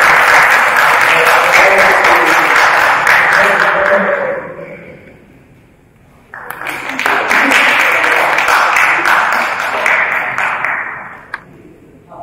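Audience applauding in two rounds: the first clapping fades out about four to five seconds in, and a second round starts abruptly just after six seconds and dies away shortly before the end.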